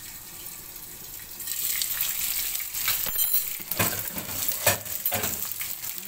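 Fish frying in hot oil in a wok, sizzling. It is muffled under a glass lid at first, then louder about a second and a half in with crackling spatter pops as the lid comes off, and a brief clink of the glass lid near the middle.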